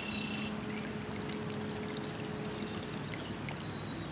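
Steady rush of running water, like a stream, with faint held tones beneath it.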